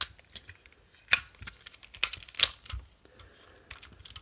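Plastic parts of a G1 Powermaster Optimus Prime toy clicking and snapping as it is transformed by hand, a few sharp clicks spread out over the moment. The toy is the North American version with no die-cast metal, so these are plastic-on-plastic clicks.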